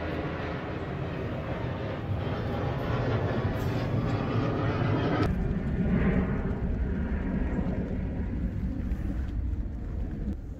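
A steady engine drone with a dense hum of overtones, which turns deeper and heavier about five seconds in.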